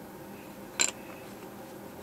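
A single short, sharp click about a second in, from small wooden pieces being handled on the workbench during hand glue-up, over a steady faint room hiss.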